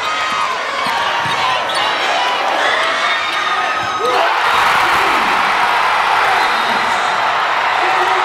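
High-school basketball game in a gym: crowd noise and shouting voices with the ball bouncing and shoe squeaks on the hardwood, then about four seconds in the crowd noise swells into a louder, sustained roar as the game-winning shot goes in.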